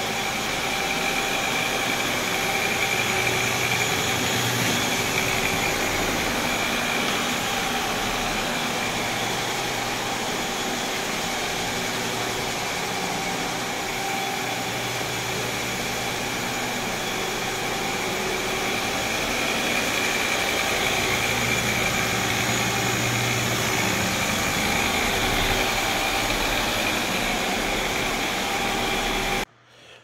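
Compact walk-behind floor scrubber running steadily across a hardwood floor: an even motor whine over rushing brush and suction noise as it cleans up the dust left from abrading the old finish. It cuts off suddenly just before the end.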